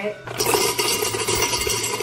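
Automatic pet feeder dispensing dry kibble into its plastic bowl, starting about a third of a second in: dense rattling of falling kibble over a steady motor whir.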